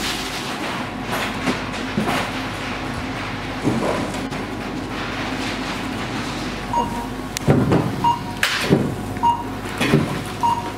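Supermarket checkout counter: a steady mechanical hum under the rustle of cloth and mesh produce bags and groceries being handled on the steel conveyor. In the second half a short beep sounds about once a second, and the rustling grows louder.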